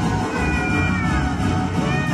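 Cat meowing over background music: one drawn-out meow falling in pitch, then a short one near the end.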